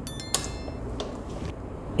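Rotary selector switch of a Truper MUT-33 digital multimeter clicking as it is turned to the 750 V AC range. A short high-pitched ding comes with the first click near the start, and a fainter click follows about a second in.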